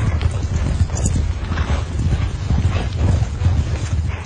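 Several horses galloping, their hooves drumming in a fast, irregular clatter over a low rumble.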